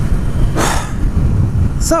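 Steady low rumble of wind buffeting and road noise with the motorcycle's engine underneath, as picked up by a helmet-mounted camera while riding at speed; a short louder rush of hiss about half a second in.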